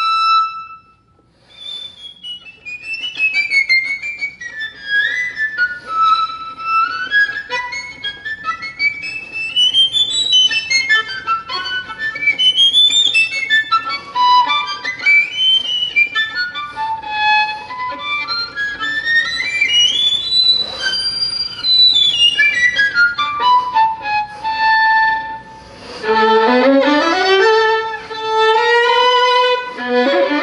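Violin playing fast virtuoso runs that climb and fall through the high register, after a brief pause about a second in; from near the end, lower, fuller notes.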